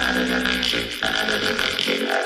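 B-boy breakbeat mixtape music in a lighter passage: held tones over a fast, steady ticking beat, with the bass dropping out near the end.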